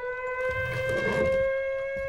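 Outdoor warning siren sounding one long, steady wail that creeps slowly upward in pitch, taken for a tornado warning. A soft low noise passes underneath around the middle.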